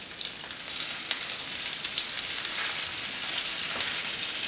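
Flour-dusted rainbow trout frying in a pan of half butter and half olive oil: a steady sizzle that grows louder a little under a second in, with a few light ticks.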